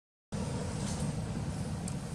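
A brief dropout to silence at a cut, then a steady low rumble of outdoor background noise, with a few faint high ticks.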